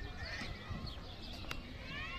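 Busy outdoor park ambience: distant voices and high, thin chirping calls, thickening near the end, over a low rumble of wind on the microphone, with one sharp click.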